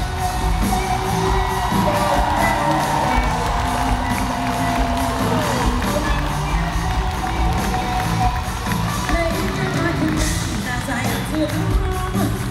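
Live rock-pop band with electric guitars and drums playing a steady beat through an arena PA, recorded from among the audience, with the crowd cheering and shouting over it.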